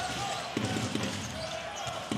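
Steady murmur of an arena crowd during live basketball play, with a ball being dribbled on the hardwood court.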